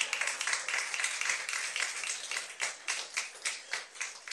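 Applause from a small group of people: many overlapping hand claps, thinning out and fading near the end.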